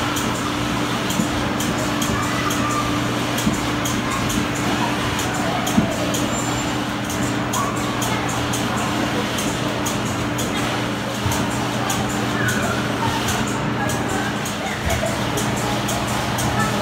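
Busy indoor amusement-arcade din: a spinning disc ride running with a steady low machine hum, mixed with music and people's voices.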